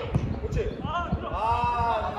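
Footballers on the pitch shouting to one another, with a long call rising and falling from about a second in, over a run of irregular low thuds.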